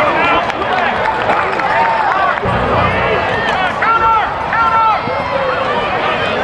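Many voices yelling and shouting over each other, a football crowd cheering during a play, with the loudest calls about two-thirds of the way in.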